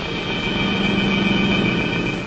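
Film score music holding one steady sustained chord.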